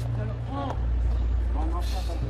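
Brief scattered voices of a crowd outdoors over a steady low rumble of city street noise.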